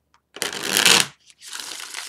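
A tarot deck being shuffled by hand, in two bursts of card-on-card rustle: the first about half a second in and the second from about a second and a half.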